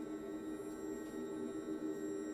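Quiet, steady contemporary chamber-ensemble music: held low-middle tones under a thin high ringing from suspended cymbals played softly with soft mallets.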